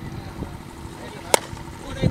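A single sharp crack a little past the middle as a cricket bat strikes a tennis ball on a full swing, with voices in the background.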